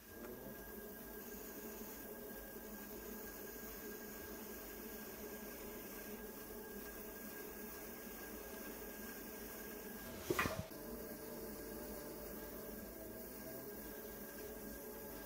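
Electric pottery wheel running steadily while a loop trimming tool scrapes leather-hard clay inside the foot ring of an upturned bowl, peeling off shavings. One brief loud knock sounds about ten seconds in.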